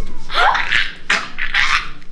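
A girl laughing loudly in two high-pitched bursts.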